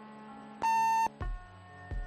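An answering machine beep, a single steady tone about half a second long, marking the start of the next recorded message. Two low thumps follow on the tape, with soft background music underneath.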